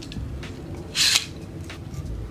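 Handling noise from a camera shoulder rig being turned in the hand, with one short scrape about a second in.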